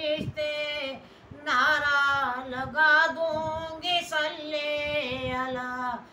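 An elderly woman singing a devotional naat solo and unaccompanied, with long held, gliding notes and a brief pause for breath about a second in.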